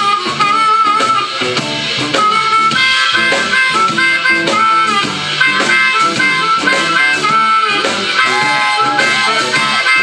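Blues harmonica solo played cupped against a handheld microphone, with long held notes that bend in pitch, over a backing band with drums.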